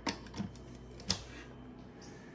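Three short sharp taps, the loudest about a second in, over quiet room tone.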